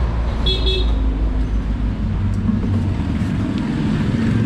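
Steady low rumble of motor traffic, with a short, flat horn toot about half a second in.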